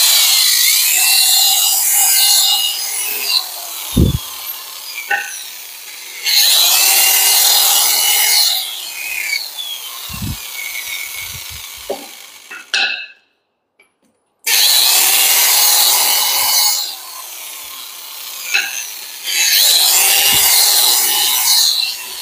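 Corded electric drill with its bit grinding into a wooden slide rail, cutting recesses around the screw holes so the screw heads sit flush. It comes in four loud bursts of a few seconds each, with quieter scraping between them and a brief silence a little past the middle.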